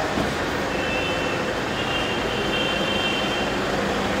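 Steady noise of vehicles in an enclosed car park, with a faint high whine for a couple of seconds in the middle.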